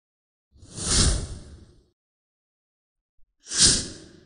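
Two whoosh sound effects, each swelling up and fading away over about a second, the second coming about two and a half seconds after the first.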